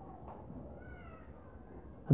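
A faint, short, high-pitched animal call about a second in, gliding slightly down, over a low steady room hum.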